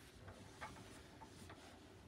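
Near silence: room tone with a few faint, irregular light ticks.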